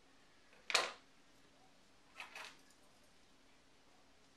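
Scissors cutting satin ribbon with one sharp snip just under a second in, then two lighter clacks in quick succession a little after two seconds in as the scissors are put down on the tabletop.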